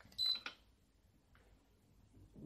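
Handheld infrared thermometer giving one short, high beep with a few clicks, as its trigger is pressed to take a temperature reading.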